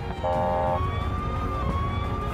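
Emergency vehicle siren sounding in a slow wail, its pitch sliding down and back up, over a steady low engine rumble. A second, buzzier tone joins it for about half a second near the start.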